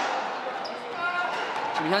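Squash ball bouncing on the court, a few light knocks between points.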